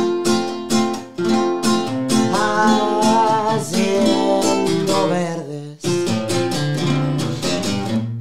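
Acoustic guitar strummed in a steady corrido rhythm with a man singing along live. The playing breaks off briefly about a second in and again just before six seconds.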